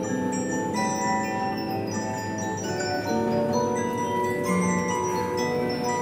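An 1896 American Regina disc music box playing a tune: its large perforated steel disc plucks the steel comb, and many notes ring on and overlap, bass and treble together.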